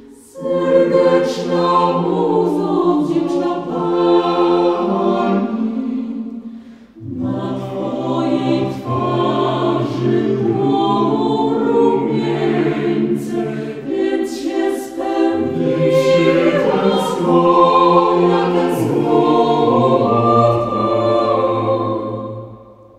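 A cappella vocal group singing in close multi-part harmony, with no instruments. The chords break briefly twice, and a low bass part comes in about seven seconds in.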